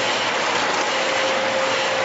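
Biscuit packing line machinery running: conveyors and packing machines making a steady mechanical noise, with a steady hum that grows stronger about a second in.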